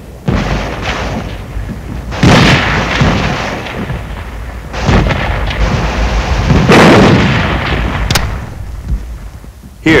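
Battle sounds of a mock city attack: loud blasts of gunfire and explosions about every two seconds, each trailing off, over a steady low rumble. A single sharp crack comes near the end.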